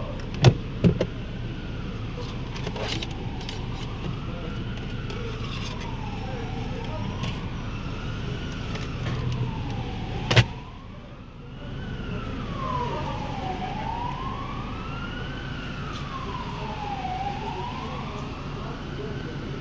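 Emergency-vehicle siren wailing, its pitch rising and falling about every two and a half seconds, heard from inside a car. Sharp clicks come near the start and a single loud knock about ten seconds in, as the interior trim is handled.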